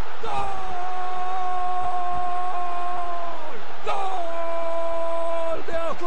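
A Spanish-language football commentator's long, drawn-out goal cry: one note held for about three and a half seconds, sinking slightly, a quick breath, then held again. It announces a goal.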